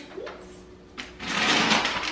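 Plastic bag crinkling as it is handled, loud and dense, starting after a click about a second in.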